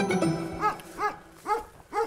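A dog barking steadily, about two barks a second, as music fades out at the start.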